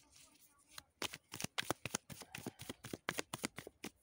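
A deck of divination cards shuffled by hand: a quick, uneven patter of card flicks starting about a second in.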